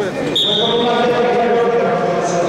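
A short, steady high-pitched tone starting sharply about a third of a second in, over voices and hall noise, as a combat sambo bout is restarted.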